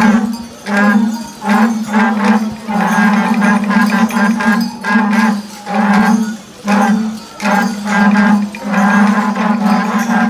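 Several natural cattle horns blown together in a string of low blasts on one pitch, each lasting from about half a second to two seconds with short breaks between.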